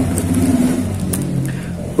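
A motor vehicle engine running nearby, its pitch dropping about a second in.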